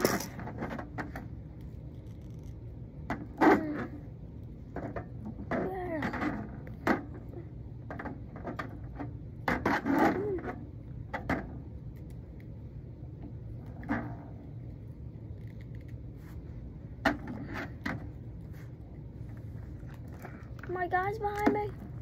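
Plastic wrestling action figures knocking and clattering against a toy wrestling ring and its ropes in scattered single knocks. A child's voice murmurs briefly now and then, most clearly near the end.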